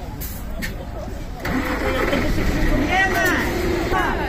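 An engine starts up about a second and a half in and keeps running loudly, over a low rumble and voices.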